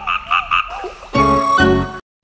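Background music with four quick croak-like calls in a row in its first half second, then the tune comes back in and cuts off suddenly at the end.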